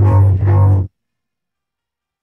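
Isolated bass track playing two short, low notes in the first second, then silence.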